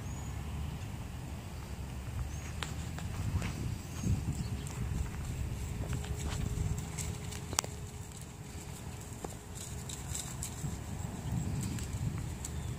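Hoofbeats of two horses coming across a grass pasture at a trot: irregular soft thuds and clicks over a steady low rumble.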